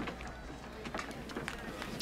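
Faint outdoor ballpark background: a low steady hum and a murmur of distant voices, with scattered light taps and footsteps.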